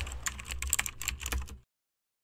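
End-card sound effect of typing: a quick run of sharp keyboard-like clicks over a low bass hum while the app-download line is typed onto the screen. It cuts off abruptly about a second and a half in.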